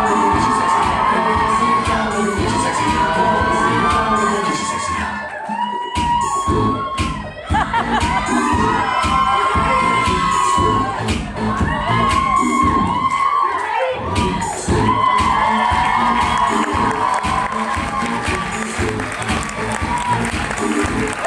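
Loud dance music with a steady beat over an audience cheering and shouting. The bass beat drops out briefly twice, about a third of the way in and again past the middle.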